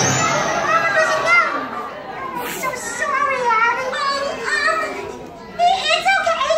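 Children in a theatre audience calling out and chattering, their voices rising and falling in loudness.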